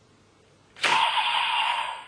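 Electronic sound effect played from a DX Kamen Rider toy belt's small speaker: a sudden loud hissing blast with a steady tone in it, starting about a second in and fading out near the end.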